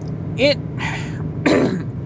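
A man says one word, then clears his throat once, about a second and a half in. A steady low hum of road noise from inside a moving car runs underneath.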